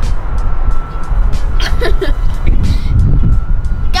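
Heavy city street traffic below a balcony: a loud, steady low rumble of passing vehicles.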